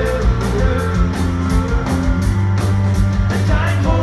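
Rock band playing power pop live: distorted electric guitars, bass and drums with steady cymbal strokes, with a sung lead vocal over the top.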